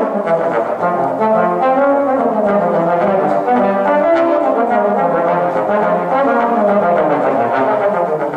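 Two bass trombones playing an unaccompanied duet, with both parts moving continuously through changing notes.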